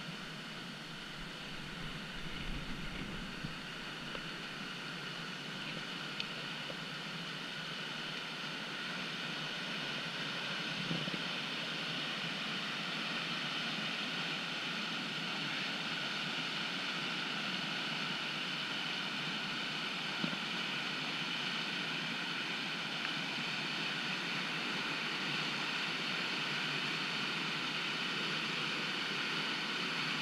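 Steady rush of whitewater rapids in a concrete whitewater channel, growing gradually louder, with a few light knocks.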